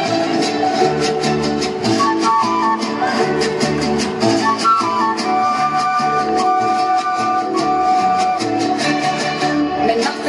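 Small live band playing an instrumental Latin dance number: drum kit and hand percussion keeping a steady beat under strummed guitar, saxophone and trumpet. A long held note runs through it, with short quick melodic runs about two and five seconds in.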